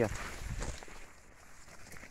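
Crop leaves and stalks brushing and rustling against the phone and the walker while pushing through a planted plot, with footsteps on soil; the rustle is strongest in the first second and then dies down.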